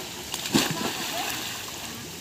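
Pool water splashing once, loudly, about half a second in, then fading out. Children's voices are heard faintly.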